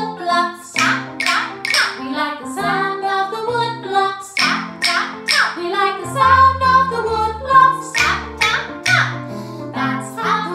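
A woman singing a children's play-along song over backing music, with sharp wooden taps about once a second from a pair of wooden rhythm sticks knocked together in time.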